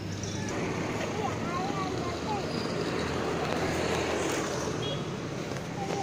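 Steady street background noise: a continuous hum of traffic with faint voices.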